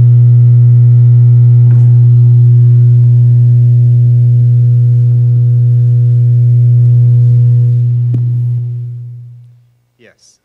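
Loud, steady low buzz from the hall's sound system, a mains-type hum with a row of evenly spaced overtones, of the kind a faulty or loose audio connection gives, likened to an air raid warning; it fades out about nine seconds in. A couple of faint knocks sound under it.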